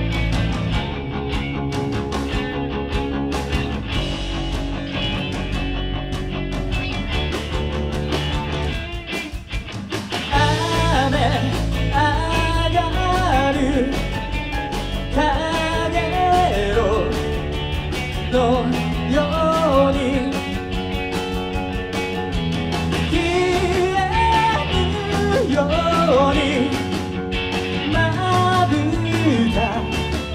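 Live rock band playing: electric guitars and drums in an instrumental passage that drops back briefly about nine seconds in, after which a male lead vocal comes in and sings over the band.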